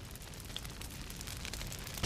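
Anime sound effect of a large fire burning: a steady, crackling rush of noise.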